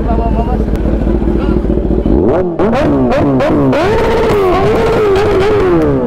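Motorcycle engine idling. From about two seconds in, a motorcycle accelerates through the gears: its pitch climbs and drops back with each shift, holds steady, then falls away near the end.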